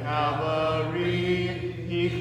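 A congregation singing a hymn a cappella, many voices holding long notes together.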